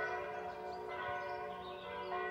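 Church bells ringing a Christmas hymn, distant and fairly quiet, as several overlapping notes that ring on while new ones sound.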